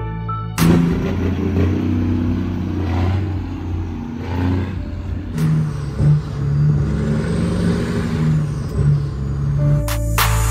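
Peterbilt 379's Caterpillar 3406E inline-six diesel running under load and accelerating, starting abruptly about half a second in, with music mixed in underneath.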